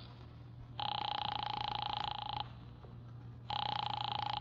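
Telephone ringing twice: a buzzy ring of about a second and a half, a pause, then a second ring starting near the end, as a call goes through to the other end.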